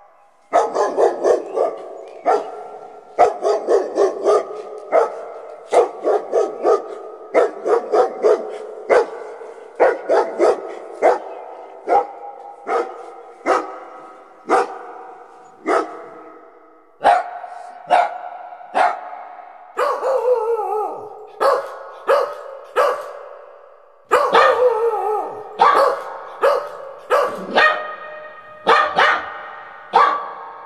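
Puppies barking and yipping over and over, short high barks coming in quick runs of several a second, with a few longer yelps that fall in pitch past the middle.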